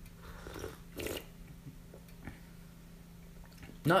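A person sipping tea from a small cup, with one short noisy slurp about a second in. A faint steady hum runs underneath.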